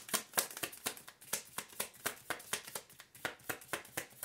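A tarot deck shuffled in the hands: a quick, irregular run of light card flicks and slaps, several a second.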